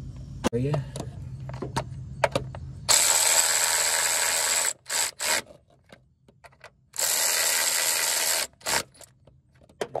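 Cordless power tool spinning a socket on an extension to run down the nuts on top of an engine mount, in two runs of about a second and a half each with a high whine, each followed by a couple of short blips.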